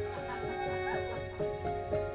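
Soft background music with held, sustained notes. In the first second, a brief wavering whine glides up and down over it.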